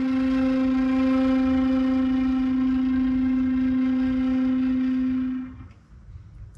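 Concert flute holding a single low note near the bottom of its range, steady and rich in overtones, for about five and a half seconds before breaking off.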